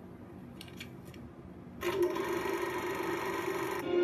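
Quiet room hiss with a few faint clicks, then, about two seconds in, a sudden held musical chord from a TV production-company logo, played through a television speaker. The chord lasts about two seconds and cuts off into another held note.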